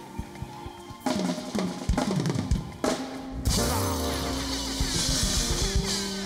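Live band on a drum kit: a run of loud snare and bass-drum hits about a second in, ending on a held full-band chord with crashing cymbals ringing over a low bass note, a typical song-ending flourish.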